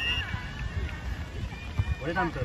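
Wind rumbling on the microphone during a beach volleyball rally, with short calls from the players. A sharp knock about two seconds in fits the ball being played.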